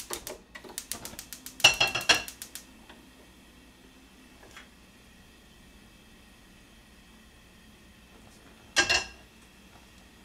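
Gas stove's spark igniter ticking rapidly for the first few seconds while the burner is lit, with a metal frying pan clattering loudly against the burner grate about two seconds in. After a quiet stretch, the pan is set back down on the grate with a single clank near the end.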